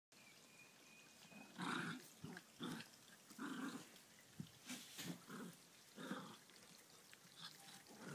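Two small Bolonka Zwetna dogs growling at each other in a play-fight: a string of short growls starting about one and a half seconds in.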